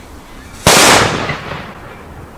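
A single very loud bang from a flash powder firecracker set off in an old thermos, about two-thirds of a second in, dying away over the next second. The thermos holds and does not burst.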